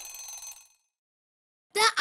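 A short ringing bell sound effect, like an alarm-clock ring, marking the end of a quiz countdown timer. It starts suddenly and fades out within about half a second. A voice starts near the end.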